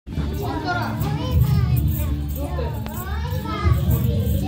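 Children's voices and chatter over music playing.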